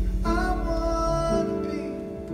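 Live acoustic band with mandolin, violin and keyboard playing the closing bars of a song, with a high note held for about a second. The low notes drop out about a second and a half in as the song winds down.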